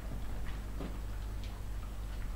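Smooth collie puppies' claws clicking on a hard floor as they move about: a few irregular ticks over a low, steady hum.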